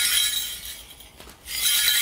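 Cluster of small brass shaman's bells jingling as they are shaken, a bright ringing shimmer that fades about a second in and picks up again near the end.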